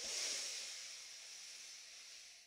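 A woman's long, slow in-breath close to a headset microphone: a breathy hiss that starts strongly and fades gradually over about two and a half seconds.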